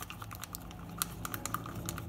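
Stick stirring acrylic paint in a plastic cup, clicking and scraping against the cup's sides in a quick, irregular run of light clicks. The paint is being thinned with added pouring medium (PVA glue and water).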